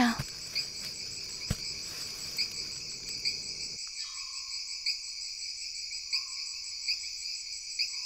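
Steady high-pitched insect chirring, pulsing softly about once a second, with a single click about one and a half seconds in. A faint low background rumble cuts off about halfway through.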